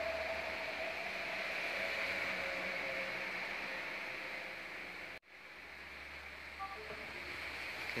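Hot-air blower running with a steady rush of air and a faint whine that slowly drops in pitch, heating a phone's glass back to soften the double-sided-tape adhesive beneath it. About five seconds in the sound cuts out abruptly, then comes back softer and gradually grows louder.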